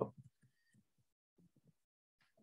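A computer key struck right at the start, entering a line, followed by two small clicks and, about one and a half seconds in, a few faint soft knocks from keys or a mouse.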